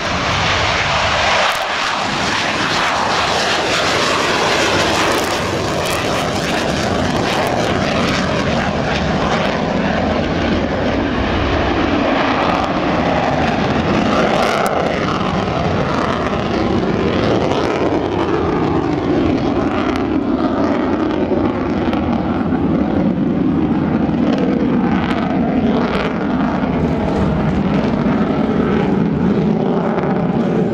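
Twin AL-31FP turbofan engines of a Sukhoi Su-30MKM fighter: a loud, continuous jet roar as it lifts off and climbs away, with a slowly wavering, sweeping pitch as the aircraft moves across the sky.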